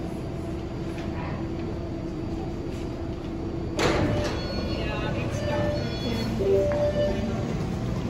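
New MBTA Red Line subway car standing at the platform with a steady hum. About four seconds in, a sudden louder sound sets in, followed by a run of short electronic chime tones from the train.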